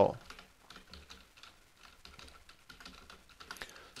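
Computer keyboard being typed on: faint, irregular key clicks, with a quicker run of keystrokes near the end.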